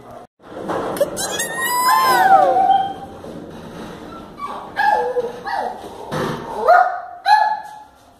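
A dog whining, with a high cry falling in pitch about two seconds in, then a string of short barks or yips in the second half.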